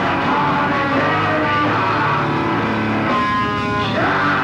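Live rock band playing an instrumental passage led by electric guitar, with a held high note near the end.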